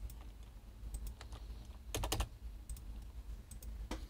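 Scattered computer keyboard keystrokes, a few single clicks with a short cluster about two seconds in, over a low steady hum.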